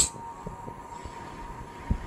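Horror film trailer soundtrack heard through a speaker: a low, steady rumbling drone with a thin high held tone that fades away, and a few soft low knocks.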